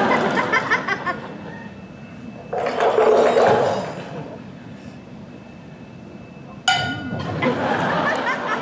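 Foley props worked live on stage: metallic clinks in the first second, a loud noisy rattling burst about three seconds in, and a sharp metal strike that rings briefly near the end.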